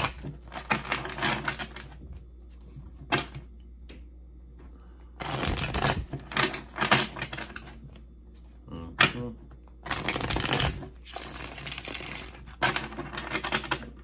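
A tarot deck being shuffled and handled: three bursts of dense riffling and rustling, at the start, in the middle and near the end, with a couple of single sharp taps between them.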